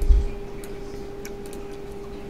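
A few faint computer mouse clicks over a steady hum, with a low thump right at the start.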